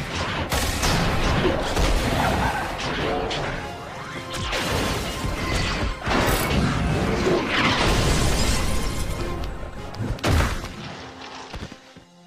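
Cartoon fight soundtrack: dramatic action music under crashing, smashing and booming sound effects, with one heavy hit about ten seconds in. It quiets near the end.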